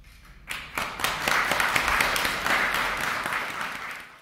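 Audience applauding: the clapping begins about half a second in, swells quickly and tapers off near the end.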